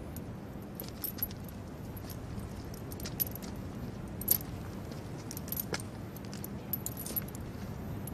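Iron chain of a prisoner's shackles jingling and clinking as he shifts with a staff, in a few separate light clinks scattered over a steady low background.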